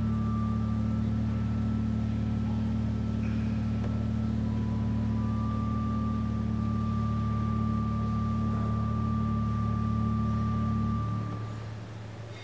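Church organ holding a sustained low chord, with a higher note joining about five seconds in; the chord is released near the end and dies away in the room.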